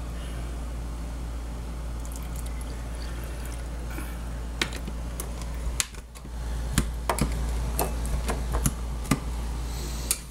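A thick blended food mixture pouring and dripping from a blender jar into a drinking glass. A few sharp glass knocks come in the second half, over a steady low hum.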